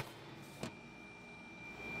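Quiet room tone with a faint steady hiss and one soft knock about two-thirds of a second in, as the lid of a small lab freezer is closed and settled into place.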